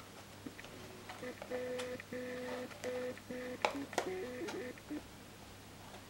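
A simple tune of short held notes, with a few sharp clicks from a small cardboard product box being handled; the two loudest clicks come about three and a half and four seconds in.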